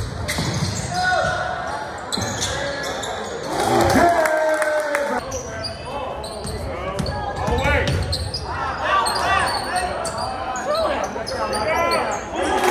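Basketball game sound in a gym: the ball bouncing on the hardwood court amid shouts and chatter from players and spectators, echoing in the hall.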